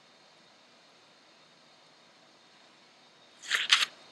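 Faint room tone, then about three and a half seconds in a brief crackle of two quick plastic scrapes as a plastic wedge and segmental matrix band are worked into place between the teeth of a plastic dental model.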